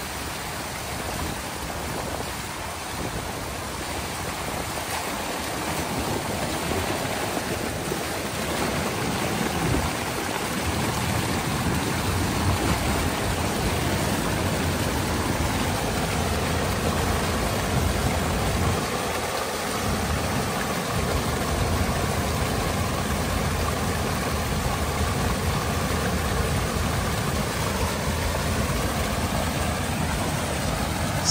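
Pond water rushing through a breach in a beaver dam and churning into white water below: a steady rush that builds somewhat louder and deeper over the first ten seconds, then holds.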